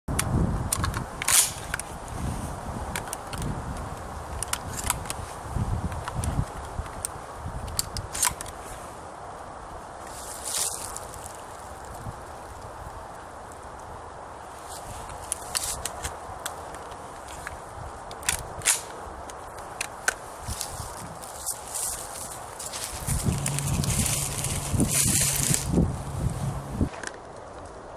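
Scattered clicks and knocks of a Winchester SXP pump-action shotgun being handled as 12-gauge cartridges are pushed into its magazine, with rustling in dry leaf litter. A steady low hum comes in near the end.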